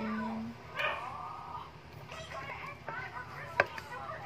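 A dog whining and yipping in short, high, wavering calls, with a sharp clink of a spoon on a dish near the end.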